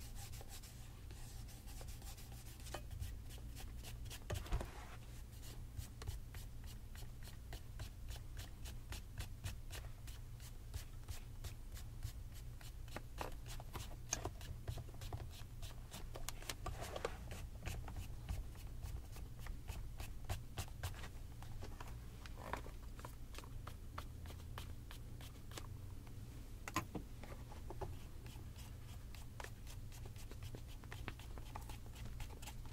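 A cloth wrapped over the fingers rubbing across a leather tassel loafer in quick, repeated strokes, about three or four a second: hand-buffing in a shoe shine.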